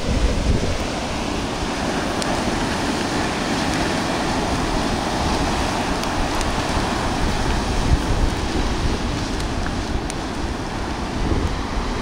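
Ocean surf washing onto the beach, with wind buffeting the microphone in a steady low rumble.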